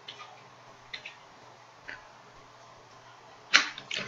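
A few faint computer keyboard clicks, roughly a second apart, over a low steady hum, with a louder short noise near the end.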